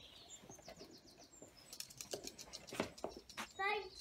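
A small bird chirping, a quick run of high notes in the first second and a half. A few light clicks follow, and a child's voice comes in near the end.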